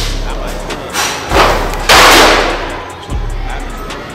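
Books knocked over on a cart: a thud about a second and a half in, then a louder crash about two seconds in that dies away over half a second, over background music.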